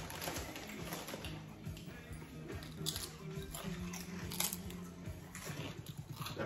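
Tortilla chips being bitten and chewed, with a couple of sharp crunches, over faint background music.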